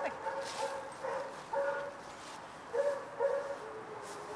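A dog whining: several short, steady-pitched, high whines that come and go.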